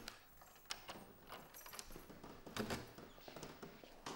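Faint, scattered light taps and clicks, a handful spread over a few seconds, in an otherwise quiet room.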